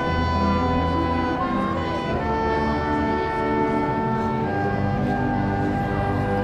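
Concert wind band playing a slow passage of long held chords, brass and woodwinds over a low bass line. The chord changes about two seconds in and again about four and a half seconds in.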